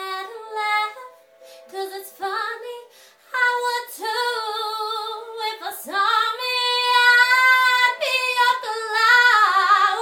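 A woman singing, mostly on long held notes that waver in pitch, with the loudest, belted notes in the second half.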